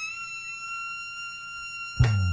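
A single high trumpet note from long herald trumpets. It slides up into pitch and is then held steady.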